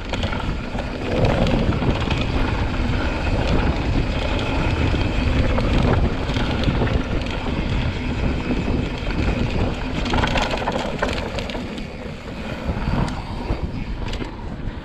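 Wind rushing over a handlebar-mounted GoPro's microphone as a mountain bike rolls down a dirt trail, with tyre noise on the dirt and frequent small clicks and rattles from the bike over bumps.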